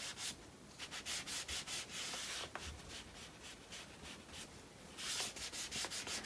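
A crumpled, slightly moist paper towel rubbed over wet acrylic paint on paper, smearing the paint down: a faint, scratchy hiss of many short strokes, several a second, a little louder near the end.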